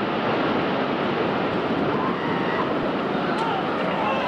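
Steady rushing roar from the collapse of the World Trade Center's north tower, with faint shouts of people in the street.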